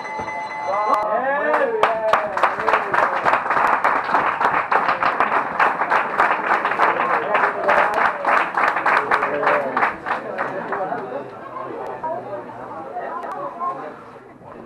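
A round-timer beep holds one steady tone for about a second at the end of a kickboxing round, then spectators clap for about eight seconds before the clapping dies away.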